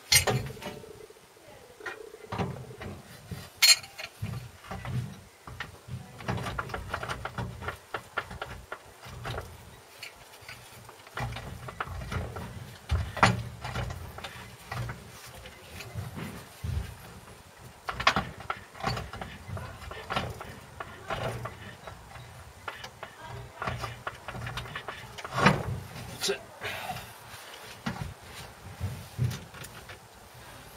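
Metal knocks and clanks as a Land Rover Series 3 gearbox is worked onto its bell housing studs and bolted up. Sharp knocks stand out every few seconds, with the loudest at the very start.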